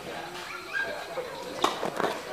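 A tennis racket strikes the ball once, a sharp crack near the end, among voices.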